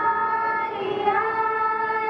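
A group of schoolgirls singing a devotional prayer together into a microphone, in slow, long-held notes.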